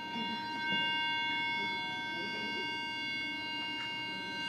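A pitch pipe sounding one steady, sustained note to give an a cappella chorus its starting pitch, over a low murmur from the stage.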